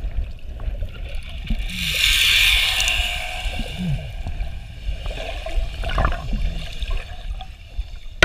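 Water gurgling and bubbling around a submerged camera, heard muffled, with a hissing rush of water from about two seconds in that lasts about a second and a half.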